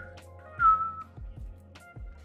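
Someone whistling a short two-note phrase, the second note the loudest and sagging slightly in pitch. Under it runs background music with a steady beat of about two thumps a second.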